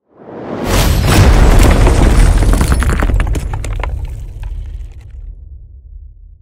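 Cinematic title-card sound effect: a swelling whoosh that hits a deep boom with crackling, shattering debris, then rumbles away over a few seconds.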